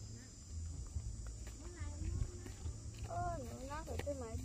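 A girl's high voice calls out with sweeping, rising and falling pitch in the last second, fainter voice sounds just before, over a steady low rumble.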